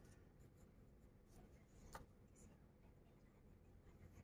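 Faint scratching of a pencil drawn lightly over paper, tracing an outline, with one soft tick about halfway through.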